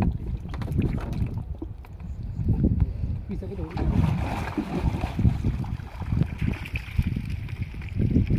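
Water sloshing and splashing around a person wading in a river as he gathers and lifts a mesh trap net, with gusty wind rumbling on the microphone.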